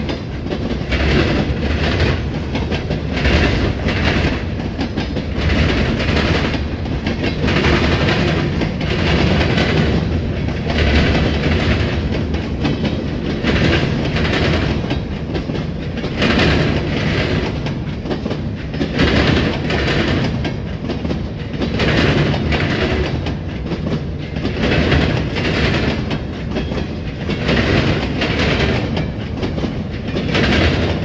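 Freight cars of a CSX train rolling past close by: steady rumble of steel wheels on rail with a regular clickety-clack, about one clack a second, as the wheels pass over rail joints.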